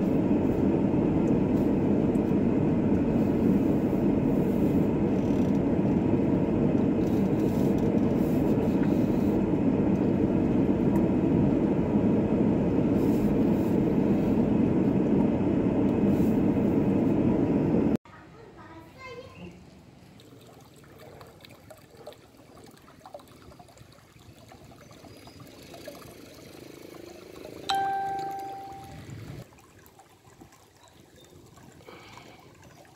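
Steady engine and road noise inside a slowly moving car's cabin for the first two-thirds. It cuts off suddenly to much quieter outdoor ambience, where a single ringing tone sounds and fades away a couple of seconds before the end.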